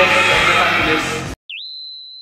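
Background music that cuts off abruptly a little over a second in, followed by a single high electronic tone that dips, swoops back up and holds steady: the opening of a logo-card sound effect.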